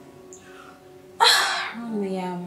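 A person's sudden, loud, breathy outburst about a second in, fading within half a second, followed by the start of speech.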